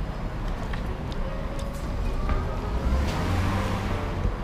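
Outdoor street background: a low steady rumble with a passing vehicle that swells up about three seconds in, and faint distant voices.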